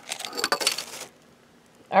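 About a second of rattly clinking and rustling handling noise as things on the table are moved, then quiet before a voice starts at the very end.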